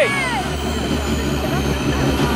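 Škoda rally car's engine idling steadily while the car stands still, a low even tone. A spectator's voice trails off at the very start.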